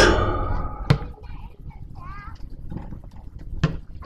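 A basketball striking hard twice, about a second in and again near the end, as boys shoot at an outdoor hoop, with children's shouts and short calls between.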